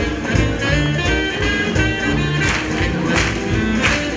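Live swing jazz band playing, with piano, double bass walking a bass line and drums keeping a steady beat with regular cymbal strokes.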